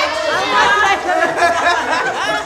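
Several people talking over one another at once: lively group chatter.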